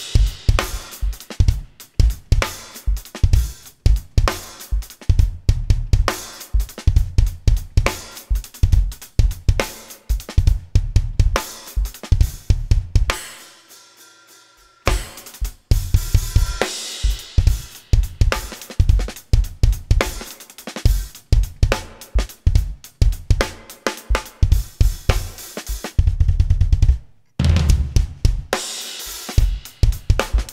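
Live jazz-fusion band with the drum kit to the fore: fast, busy kick, snare and cymbal hits. The playing drops away briefly about halfway through, leaving faint held notes, then the kit comes crashing back in.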